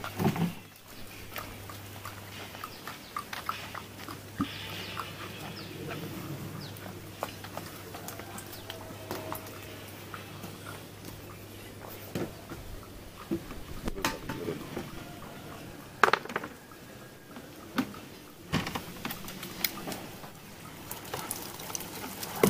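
Handling noise from a plastic crate of live catfish being carried and set down: scattered knocks and taps, with the sharpest knock about two-thirds of the way in, over a low steady hum.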